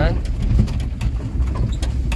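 A moving vehicle's engine and road noise, a steady low rumble heard from inside, with short knocks and rattles throughout.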